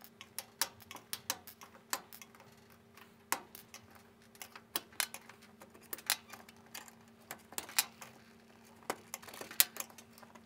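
Plastic oven control knobs being prised off their spindles with a flat-blade screwdriver and set down on a glass hob: a run of sharp, irregular clicks and taps, one to three a second, over a faint steady hum.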